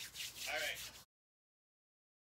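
Cardboard toy box rubbing and rustling close to the microphone for about a second, with a faint voice under it, then the sound cuts out to total silence.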